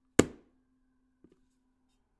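A wooden spoon strikes an upturned plastic container once: a short, sharp knock that dies away almost at once. Under it a stainless steel pot struck just before keeps ringing with one steady tone, the long sound set against the short one, and the ring cuts off near the end.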